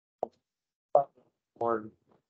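Three short, clipped fragments of a voice separated by dead silence: a brief pop about a quarter second in, then two short syllables near the middle and near the end.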